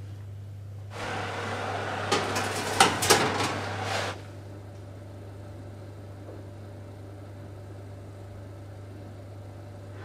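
Glass baking dish being handled and put into an oven: a stretch of rustling with several sharp knocks, likely the oven door and the dish on the rack. This ends about four seconds in, leaving a steady low hum.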